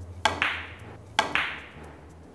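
Carom billiard balls clicking during a three-cushion shot: two sharp clicks about a second apart, each ringing briefly as it fades.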